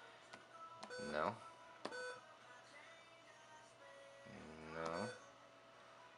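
Soundstream VR-931nb car stereo's touchscreen key-press buzzer giving several short beeps as its menu icons are tapped.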